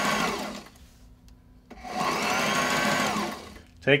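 Sewing machine stitching a zipper tape onto fabric, run in two short bursts; each time the motor speeds up and then slows down.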